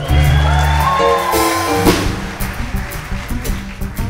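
Live folk-rock band playing an instrumental passage without vocals, led by plucked upright bass with drum kit and acoustic guitar. A loud cymbal hit comes just before the middle.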